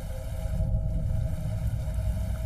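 Rain-sounds ambience track: a steady low rumble with a faint hiss over it and a faint steady tone.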